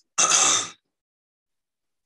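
A man clearing his throat once, a short, harsh rasp of about half a second near the start.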